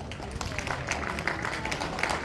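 Audience applauding at the end of a show, scattered claps thickening into steady clapping about half a second in.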